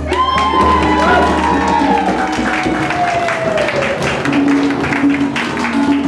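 Hand-drum circle on congas and djembes: the drumming breaks off and the group cheers, with one long whoop that slowly falls in pitch over about four seconds and dense clapping underneath. A lower held voice comes in near the end.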